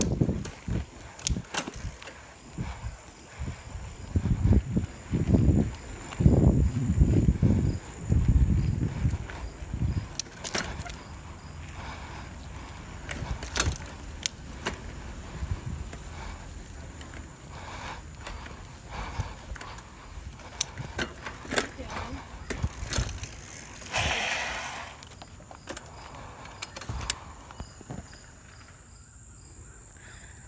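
A bicycle being ridden along a road. Wind buffets the microphone in gusts over the first ten seconds, with scattered sharp clicks and knocks from the bike and the handheld camera throughout.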